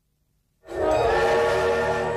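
Silence, then about half a second in a steam locomotive whistle starts: several steady tones sounding together over the low rumble of a train, held on loud.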